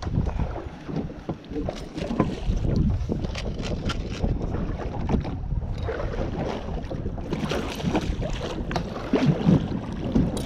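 Wind buffeting the microphone and choppy water slapping against the hull of a small aluminum fishing boat, with scattered knocks and clatter as a rod is set down and a landing net is picked up.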